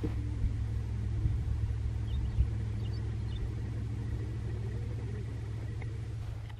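Diesel-electric locomotives of a heavily loaded iron ore train working hard up a steep grade: a steady low engine rumble. Faint bird chirps are heard in the middle.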